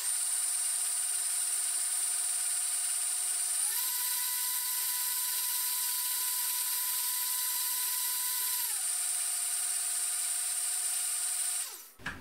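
Countertop glass-jug blender motor running steadily while blending soup liquid. Its pitch steps up about four seconds in, drops back about nine seconds in, and the motor stops just before the end.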